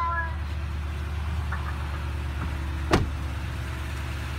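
A steady low hum throughout, with a single sharp knock about three seconds in.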